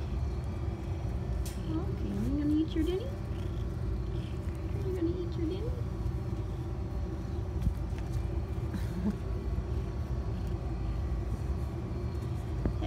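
Domestic cat purring while being stroked: a steady low rumble. A few short, soft rising voice sounds come over it.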